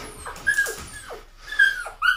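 A dog whimpering: about four short, high whines, each sliding down in pitch.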